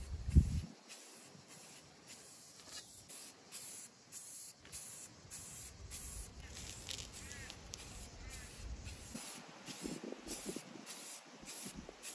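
Aerosol can of Rust-Oleum 2X flat white primer spraying, a hiss in many short bursts. There is a thump about half a second in.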